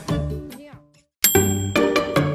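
Background music fades out into a brief silence; about a second in, a bright ding chime sounds and music with a regular beat starts again.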